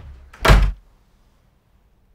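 A door slamming shut: one loud, heavy thud about half a second in.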